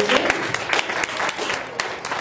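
Congregation applauding: a dense patter of many hands clapping.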